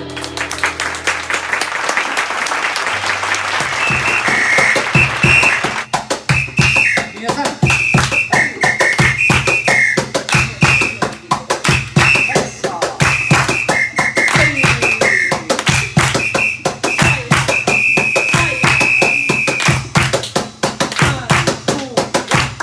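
Andean folk band playing live: strummed charango and guitars with double bass and drums keep a steady beat. A high flute melody in short notes enters about four seconds in and runs until near the end.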